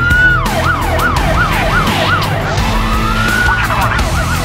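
Police car siren switching between modes: the top of a rising wail, then a yelp sweeping up and down about three times a second, a second wail rising over about a second, and a quicker yelp near the end. Background music with a steady beat plays underneath.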